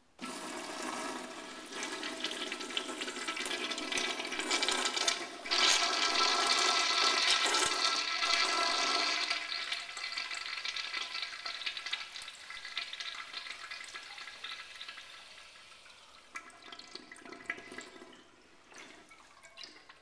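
Kohler Dexter urinal flushed by a Sloan Royal low-consumption flushometer, rated at one gallon per flush. Water rushes in suddenly, swells and runs loudest for a few seconds in the middle, then tapers off gradually as the valve shuts.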